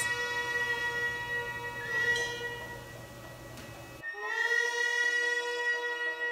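Background music: a wind instrument holding long, steady notes. A note fades out, and a new one swells in about four seconds in.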